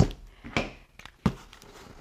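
A cardboard shipping box handled on a tabletop: three short knocks and taps as it is lifted and set down, one right at the start, one about half a second in and a lighter one just past a second.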